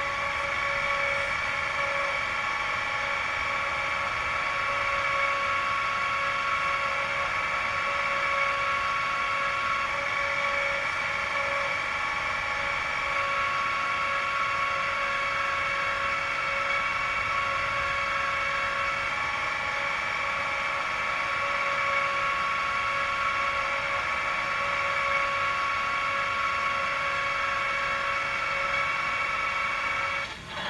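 Sound decoder of an H0-scale ČSD class 751 "Bardotka" diesel locomotive model playing the diesel engine idling steadily. It comes through the model's small onboard speaker, so it sounds thin and has no low end.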